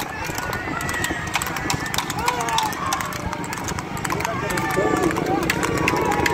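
A horse's hooves clip-clopping fast on asphalt as it pulls a two-wheeled racing cart, under men's shouts and the low, steady running of a vehicle engine alongside.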